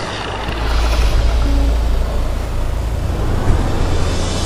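Seat Exeo estate's engine running with a strong, steady low rumble as the car moves slowly.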